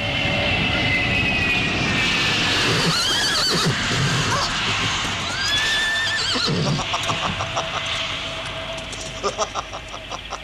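A jet aircraft flies low overhead with a steady roar and a slowly falling whine. A horse whinnies twice through it, about three and five and a half seconds in, and a quick run of knocks follows near the end.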